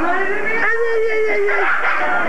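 A baby giving one long, steady wail lasting about a second, with voices around it.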